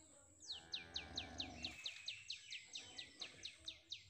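A bird calling a fast run of sharp, down-slurred notes, about five or six a second, starting about half a second in and going on past the end. A low drone sounds underneath for the first second and a half.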